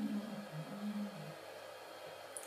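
A woman's soft hummed hesitation, a low wavering 'mmm' for about a second and a half, then only faint room hiss.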